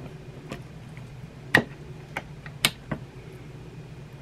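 Several sharp, separate clicks and taps, the two loudest about a second and a half and two and a half seconds in: the plastic lid latch and lids of a stainless steel triple slow cooker being handled and locked down.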